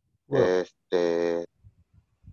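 A voice heard over a video call: a short 'I', then a held, flat-pitched hesitation sound like 'ehh' of about half a second.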